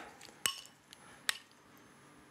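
A spoon clinking twice against a small glass bowl of salsa as it is scooped out, two short ringing clicks about a second apart.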